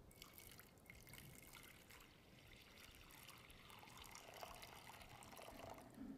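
Water poured from a jug into a shallow baptismal bowl: a faint, steady trickle and splash that starts at once and stops near the end.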